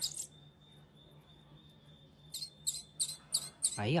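Fledgling bird's high, thin begging chirps, a quick run of about three to four a second starting a little past halfway, while it is being hand-fed from a stick.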